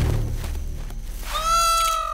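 A peacock's call: one long, level, nasal cry starting about one and a half seconds in and lasting under a second. Before it, a low rumble fades out over the first second.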